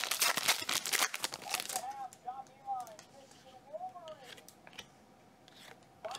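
Trading cards and their plastic sleeves and toploaders being handled, a quick run of crinkly clicks and rustles in the first second and a half that then gives way to quieter handling.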